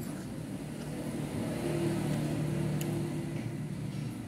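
A motor vehicle's engine going past, a steady hum that swells about a second in and fades near the end, with one light clink of cutlery.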